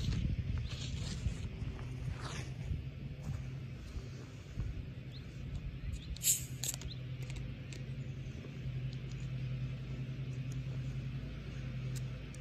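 A plastic Diet Coke bottle's screw cap twisted open, with one short hiss of escaping carbonation about six seconds in. Under it runs a steady low hum.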